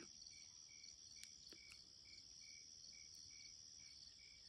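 Faint chorus of crickets: a steady high-pitched trill with regular chirps repeating about twice a second, and a couple of faint clicks a little over a second in.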